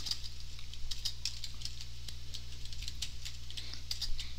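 Computer keyboard being typed on: irregular keystroke clicks, several a second, over a steady low electrical hum.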